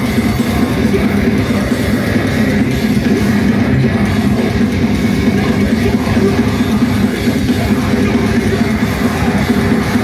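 Heavy metal band playing live: distorted electric guitars and drums in a loud, dense wall of sound, heard from the crowd.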